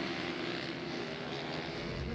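Supermoto race motorcycle engine heard from trackside as a steady, even drone with no clear revving.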